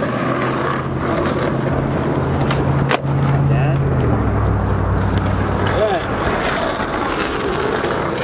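Skateboard wheels rolling on street asphalt, a steady low rumble that drops lower about halfway through, with one sharp clack about three seconds in.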